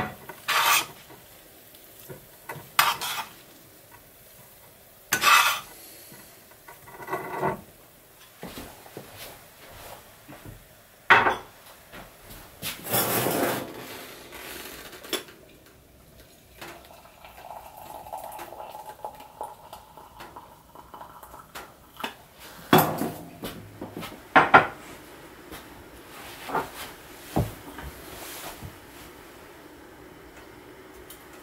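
Dishes and utensils clinking and clattering in scattered knocks, with a longer scraping stretch about thirteen seconds in.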